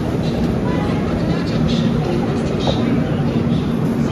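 Steady low rumble and hum of a passenger train standing at the platform.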